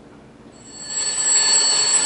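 Mechanical twin-bell alarm clock ringing. It starts about half a second in and grows louder over the next half second into a steady, high ring.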